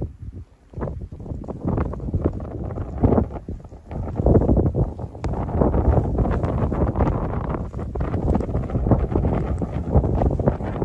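Blizzard wind buffeting the phone's microphone in gusts, a low rushing noise that dips briefly near the start and grows stronger from about four seconds in.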